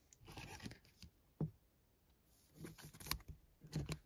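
Faint crinkling and rustling of trading cards and their plastic or foil packaging being handled, in short scattered bursts with a sharp click about a second and a half in.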